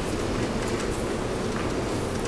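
Steady rumbling background noise picked up by an open microphone, with a few faint clicks and no speech.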